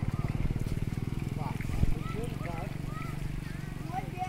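A small engine running steadily with a rapid low throb, and a single sharp knock about two seconds in.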